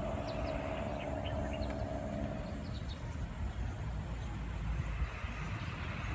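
Outdoor city ambience: a low, steady traffic rumble with a sustained hum that fades out about two and a half seconds in, and a few faint bird chirps.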